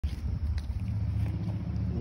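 A steady low rumble, with some wind noise on the microphone and a few faint clicks.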